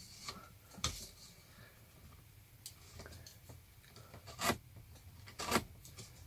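Quiet sounds of marking out wood: a pen scratching lines across a pine strip while the strip and a card template are shifted on a wooden bench hook. Three short knocks come about a second in, at about four and a half seconds and at about five and a half seconds.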